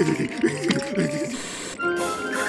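A cartoon character shivering with cold: rapid teeth chattering and wavering, trembling vocal sounds over light background music. The sound drops out briefly near the end, and a new piece of music with held notes begins.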